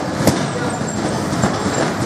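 A gloved punch landing on a heavy punching bag: one sharp smack about a quarter second in, with a weaker knock later. Both sit over a steady background din with some voices.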